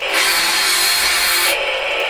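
A loud burst of static-like noise in an electronic music track. It cuts off sharply about three quarters of the way through, leaving a quieter layer of noise.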